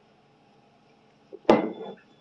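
A soda bottle set down on a hard surface: one sharp clunk about one and a half seconds in, with a brief ring as it dies away.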